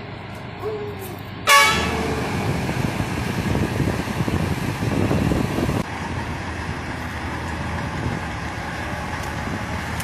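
One short, loud vehicle-horn blast about one and a half seconds in. It is followed by the steady engine noise of a six-wheeled military cargo truck rolling past, loudest about halfway through.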